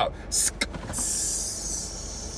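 Cardboard shoebox lid being pulled off the box: a brief scrape about half a second in, then a steady papery sliding rustle from about a second in.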